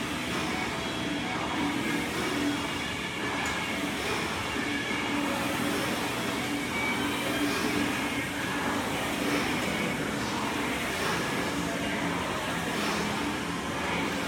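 Steady gym room noise: a constant rumble with a faint hum and no distinct impacts.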